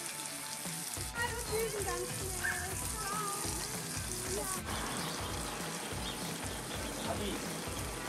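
Bacon sizzling in a non-stick camping frying pan over a charcoal fire, under background music with a steady beat and a sung or spoken melodic line in the first half.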